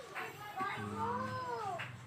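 One drawn-out whining call, about a second long, that rises and then falls in pitch.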